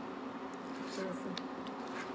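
A spoon stirring thick chana dal halwa in a pan over high heat: a quiet, even hiss with a couple of faint ticks.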